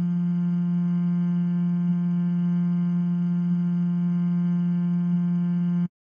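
A held note from a monotone vocal-tone sample played in Ableton's Sampler, set to loop back and forth between its loop points. It is one steady pitched tone with many overtones, cutting off suddenly near the end when the note is released.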